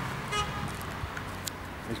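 Street traffic ambience with a short car horn toot about half a second in.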